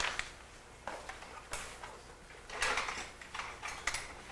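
A loose sheet of paper being handled and rustling over an artwork, in a string of short scratchy bursts, loudest about two and a half to three seconds in.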